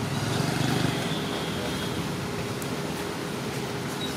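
Steady outdoor background noise, a low rumble with a hiss over it, swelling slightly in the first second, with a faint thin high tone in the first two seconds.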